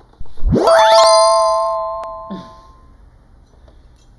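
An edited-in reveal sound effect: a fast rising whoosh that lands on a bright, ringing multi-tone chime, fading away over about two seconds. It is a 'bling' sting as a jewelry box is opened.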